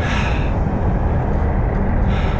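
Wind buffeting the microphone outdoors: a loud, continuous low rumble, with a brighter hiss in the first half second.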